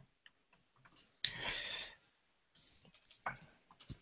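Faint, sparse clicks of a computer keyboard and mouse. A short hiss-like burst of noise comes about a second in.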